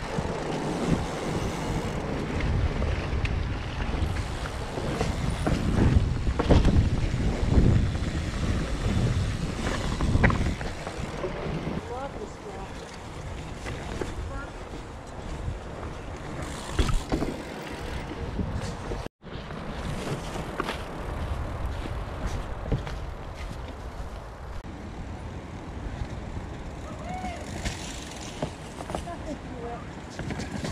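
Fat bike riding along a leaf-covered dirt trail, tyres rolling over leaves and roots with the bike rattling and knocking, under heavy wind noise on the microphone. Loudest through the first ten or so seconds, then calmer; the sound drops out completely for an instant about two-thirds of the way in.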